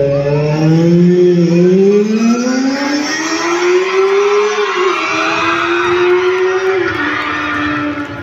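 A played-back vehicle engine sound effect: a tone that climbs steadily in pitch for about four seconds, drops suddenly about halfway through, holds steady, then drops again shortly before the end.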